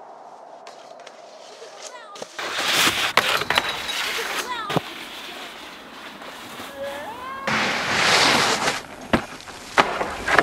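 Snowboard scraping over snow and a steel stair handrail, with several sharp knocks of the board on metal and a long, loud scrape near the end; voices call out in between.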